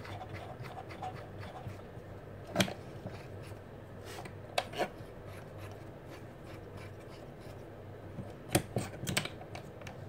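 Steel open-end spanners clicking against each other and the spindle as a small faceplate is tightened onto the spindle of a Proxxon DB 250 mini lathe: about half a dozen scattered sharp metallic clicks, in pairs and threes, over a faint low hum.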